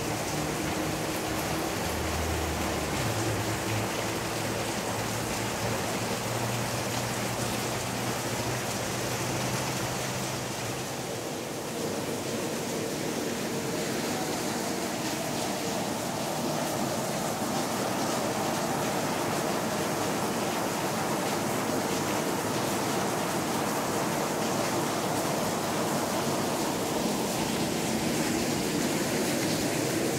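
Steady rush of running water, an even hiss with no pauses, with a low hum underneath for about the first ten seconds.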